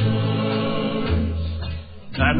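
Choir singing slow, held gospel-style chords, the low note moving about a second in; the music dips near the end.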